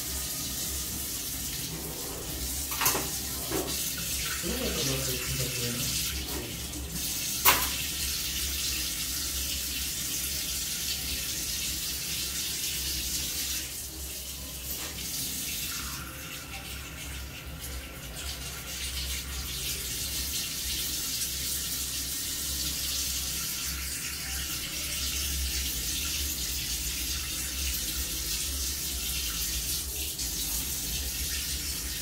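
Water running steadily from a kitchen tap, a continuous hiss, with two sharp clinks about three and seven seconds in.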